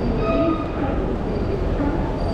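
Busy railway station concourse ambience: a steady low rumble under a murmur of distant voices and footsteps, with a brief pitched tone early on.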